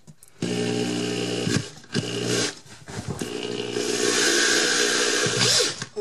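Power drill driving a screw through a wall bracket and drywall into a wooden wall stud, in three runs: a run of about a second, a brief burst, then a longer, louder run of about three seconds as the screw bites into the solid wood of the stud.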